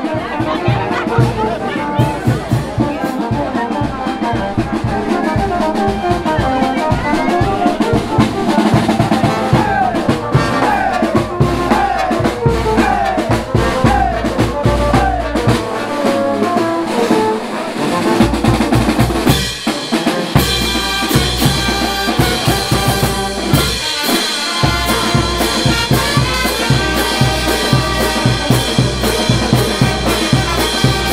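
A festival brass band plays: trumpets, saxophones, trombones and tuba over an even beat of bass drum, snare drums and crash cymbals. About ten to fifteen seconds in, the horns play a string of falling runs. The bass drum drops out briefly a couple of times.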